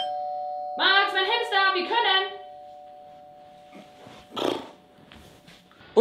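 Two-tone doorbell chime, ding-dong, high note then low note, ringing on and fading slowly over several seconds. Over it, about a second in, comes a drawn-out vocal sound from a man, and a short breathy noise about four and a half seconds in.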